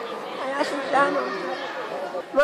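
Background chatter of many people talking at once in a large hall full of people, a steady murmur of overlapping voices.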